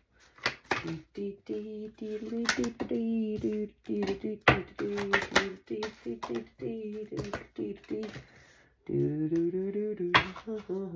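A woman's voice murmuring under her breath, with sharp clicks of a deck of paper cards being shuffled and flipped by hand. There is a short pause a little before the end.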